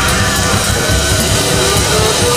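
Live band of saxophones, guitar, keyboards and drums playing a dense, loud psychedelic jazz-rock groove, with wavering horn and guitar lines over a steady bass and drum beat.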